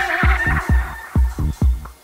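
Electronic music with a deep kick drum beating about four times a second, and a held synth-like tone that fades out within the first half second.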